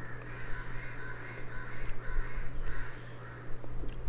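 A bird calling several times in the background, each call a short noisy cry repeated about every half second to a second, over a steady low hum.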